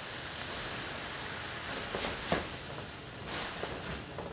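Red wine hitting a hot sauté pan of browned vegetables and tomato paste, sizzling with a steady hiss as it deglazes the pan. There is a sharp click a little past halfway, and the hiss swells near the end.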